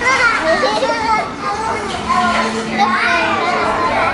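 Young children's high-pitched voices, talking and making playful vocal sounds without clear words, sometimes overlapping.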